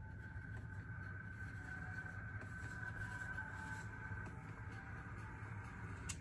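Faint scratching of a fine-toothed plastic lice comb dragged through short, tangled wavy hair, pulling out product buildup, over a steady thin high tone.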